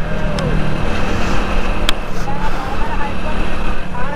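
Steady rumble of a road vehicle on the move, with a low steady hum under a noisy haze and two sharp clicks, the first about half a second in and the second near the middle. Faint voices in the background.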